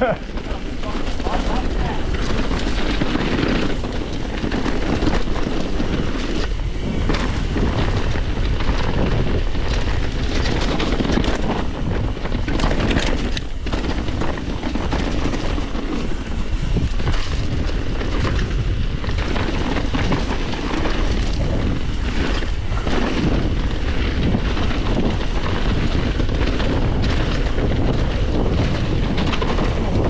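Mountain bike descending a muddy trail at speed: tyres running over the dirt and the bike rattling over bumps in many sharp knocks, under steady wind noise on the microphone.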